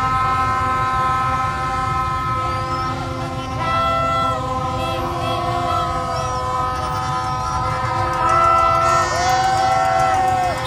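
Many plastic fan trumpets and motorbike horns blown at once, long overlapping steady tones at several pitches, a few bending up and down near the end, over the low rumble of a slow-moving crowd of motorbikes.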